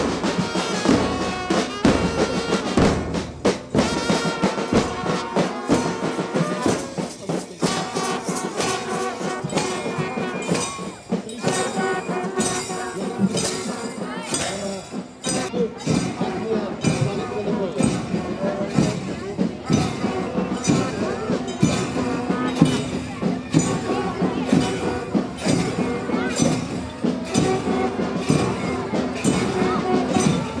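School marching band playing: bass and snare drums beating a steady march rhythm under a trumpet melody, with crowd voices in the background.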